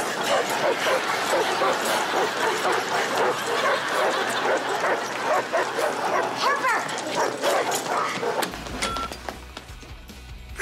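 Several dogs barking and yipping, their barks overlapping thickly; the barking dies down about eight and a half seconds in.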